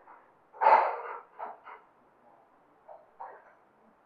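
Breathy, unvoiced laughter from a person: a strong huff of breath about half a second in, then a few shorter, fainter puffs.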